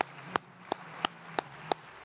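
One person clapping close to a microphone: sharp, evenly spaced claps, about three a second, over a faint low hum.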